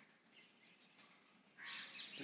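Near silence: room tone during a pause in the narration, with a brief faint high-pitched sound starting near the end.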